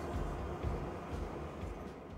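Low, uneven rumble of handling noise from a handheld phone being moved about, fading out near the end.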